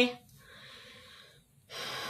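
A woman's breathing between sentences: a faint breath after her words trail off, then a louder, noisy intake of breath near the end.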